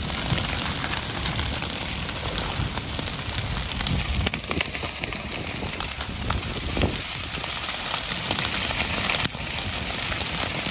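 Dry prairie grass burning at an advancing flame front: a dense, steady crackle of many small pops. Low gusts of wind rumble on the microphone now and then.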